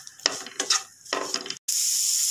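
Wooden spatula stirring and scraping chopped carrots and beans around a non-stick frying pan, three or four separate strokes. About one and a half seconds in the sound breaks off for an instant, then the vegetables sizzle steadily in the hot oil with a high hiss.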